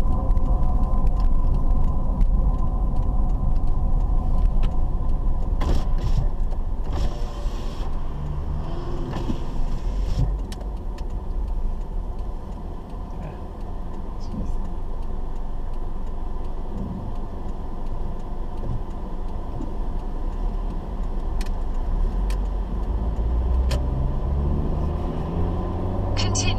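Car driving noise heard from inside the cabin: a steady low engine and road rumble that quietens as the car slows about halfway through, then the engine note rises as it pulls away near the end. A few faint clicks.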